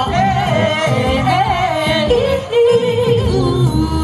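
Female R&B vocalist singing live with long, gliding melismatic runs over a backing track with bass, heard through a stage PA.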